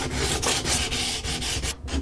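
Hand sanding along the edge of a wooden guitar neck's fretted fingerboard, quick back-and-forth strokes with a brief pause near the end. The sanding packs the small gaps beside the fret ends with sawdust, ready for a drop of super glue.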